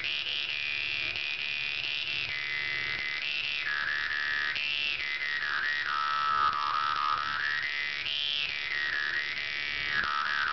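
Vietnamese đàn môi (jaw harp) plucked over and over, giving a steady buzzing drone whose bright overtone glides up and down as the player's mouth shapes a melody.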